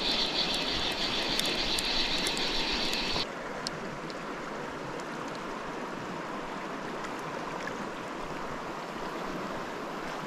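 Fast river water running steadily over a shallow riffle, with a brighter hiss for about the first three seconds that cuts off suddenly.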